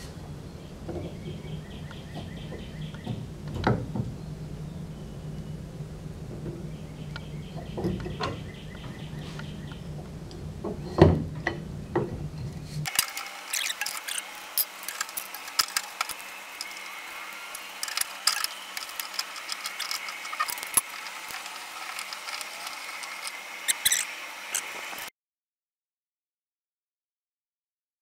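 The rusted threaded collar of a 1935 Ford's gas filler neck being unscrewed from the fuel tank by hand, freshly broken loose with a pipe wrench. Scattered metallic clicks, knocks and scraping come from the threads and the wrench, with one sharper knock about halfway. A low hum runs under the first half, and the sound cuts off suddenly near the end.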